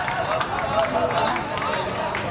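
Several people's voices shouting and talking at once on an outdoor football pitch, overlapping with one another at a steady level.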